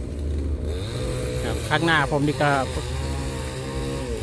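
A small engine running steadily, a low even hum under a man's speech.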